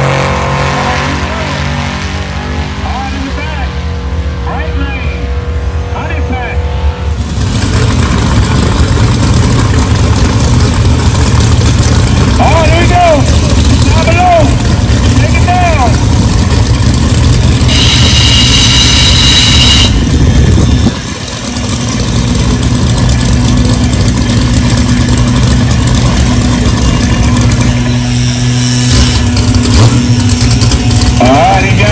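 A drag car's engine fading as it runs away down the strip over the first few seconds. Then another car's engine running loudly and steadily near the starting line, with a short high-pitched squeal about two-thirds of the way in and a brief drop in level just after.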